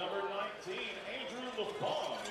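A man's voice talking at a lower level than the booth commentary, with another quick "good" near the end.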